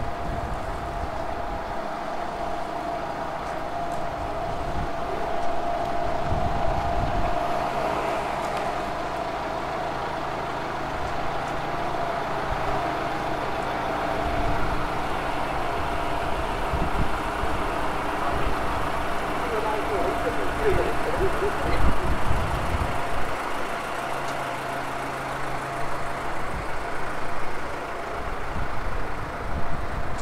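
Street ambience with a steady hum of vehicle engines idling and traffic, and people's voices now and then.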